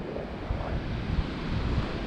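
Wind rumbling on the microphone over the steady wash of ocean surf breaking on a beach.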